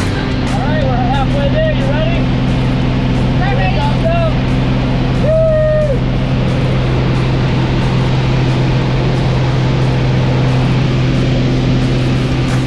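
Steady drone of a small plane's piston engine and propeller heard inside the cabin. Voices call out over it in the first few seconds, with one short held call about five seconds in.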